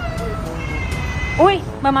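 A domestic cat meowing.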